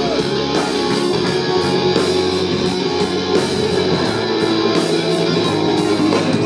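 Live rock band playing an instrumental passage without vocals, loud and steady, led by electric guitars with keyboard underneath.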